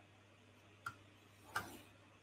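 Faint room tone with a single sharp click a little under a second in, then a softer short tick-like noise just past halfway.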